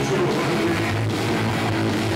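Punk rock band playing live: electric guitar and bass guitar over drums, loud and steady.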